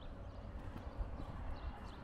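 Footsteps on a paved road, with a sharper step about halfway through.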